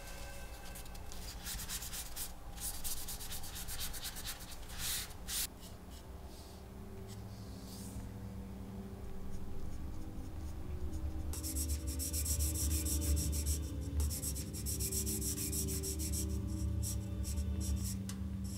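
Charcoal drawing on paper: a tissue rubbing and blending the charcoal in quick strokes for the first few seconds. After a quieter stretch, a charcoal pencil scratches rapidly across the paper in short, fast strokes.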